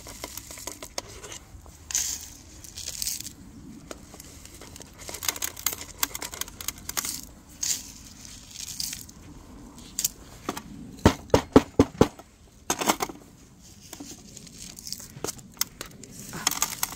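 Gritty potting mix poured from a scoop into a pot around a succulent's roots, rustling and crackling as the grains land and are pressed in by gloved hands. A quick run of sharp clicks about two-thirds of the way through is the loudest sound.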